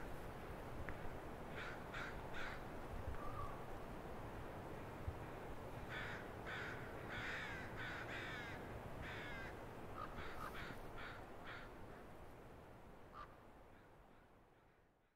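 Crows cawing faintly: a few harsh calls early, then a longer run of calls in the middle and a few more later, over a faint steady hiss of outdoor background that fades away near the end.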